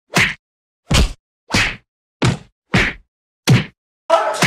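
Six whacking hits in a row, evenly spaced about two-thirds of a second apart, with dead silence between each: slapstick punch sound effects laid over a beating.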